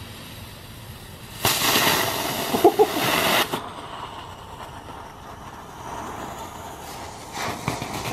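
Small novelty tank firework on pavement hissing as it sprays sparks: a loud burst of about two seconds starting about a second and a half in, then quieter until it starts up again near the end.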